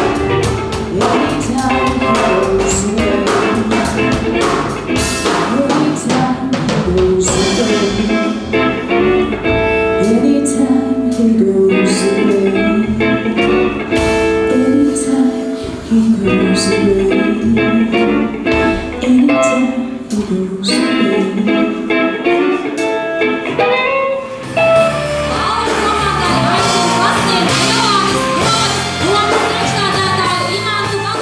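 Live band playing: electric guitar over a drum kit, a steady song with a regular beat. About 24 seconds in, the sound becomes denser and noisier.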